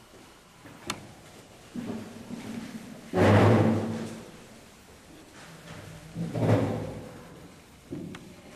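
Small explosions in a test tube as potassium permanganate reacts at the boundary between concentrated sulfuric acid and denatured alcohol. There is a sharp click about a second in, then two loud thuds with a ringing low boom, one just after three seconds and one near seven seconds.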